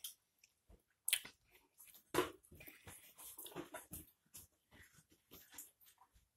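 Mostly quiet, with a few faint, brief clicks and a short mouth sound from a child chewing oatmeal and moving at the table.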